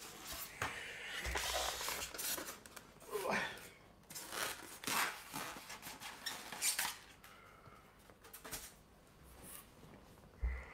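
Foam packing being pulled apart and rubbed while a heavy statue bust is worked out of its box, with irregular scrapes and rustles.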